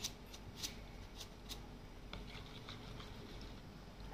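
Faint handling sounds of a metal spoon and salt in a plastic measuring jug of brine: a few light clicks in the first second and a half as salt is poured onto the spoon and tipped in, then soft scraping as it is stirred.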